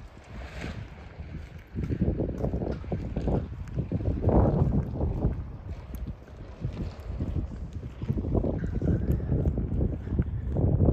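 Wind buffeting the microphone in irregular low rumbling gusts, stronger from about two seconds in.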